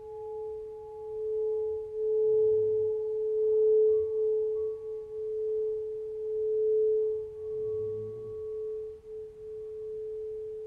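Crystal singing bowl sung by a mallet circling its rim: one steady, nearly pure tone that swells and ebbs in slow waves.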